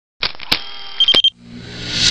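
Electronic logo-intro sound effects: a run of sharp digital clicks with a brief high beep about a second in, then a rising whoosh that swells toward the end.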